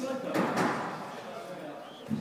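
Indistinct voices in a large, echoing indoor hall, with a short louder sound about half a second in.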